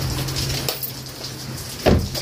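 Rain falling steadily, with a low steady hum underneath and a single loud thump near the end.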